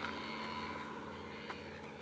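Quiet outdoor ambience: a steady low hiss with a faint hum, and one soft click about one and a half seconds in.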